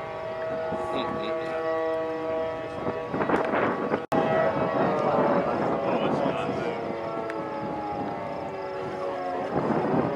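Outdoor tornado warning sirens wailing, several held tones that slowly sink in pitch, with voices in the background. The sound drops out for an instant about four seconds in.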